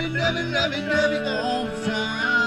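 Country music: a song with guitar and a singing voice.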